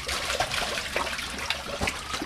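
Fish thrashing at the surface of an aquaponics fish tank as they feed, a fast, irregular patter of small splashes in churning water.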